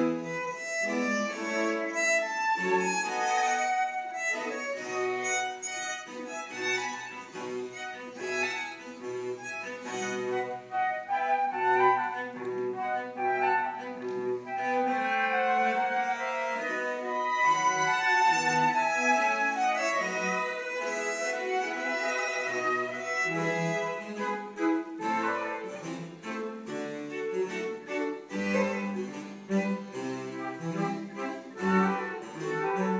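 A baroque chamber ensemble of violins, cello, harpsichord and flute playing a continuous passage of many quickly changing notes.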